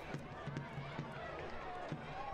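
Faint open-air ambience of a live soccer match: distant voices calling out on and around the pitch over low stadium background noise.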